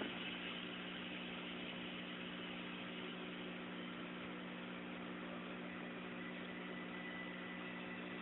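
Steady low hum with a constant hiss, unchanging throughout, with no distinct events: background room tone of the kind made by a fan or electrical hum.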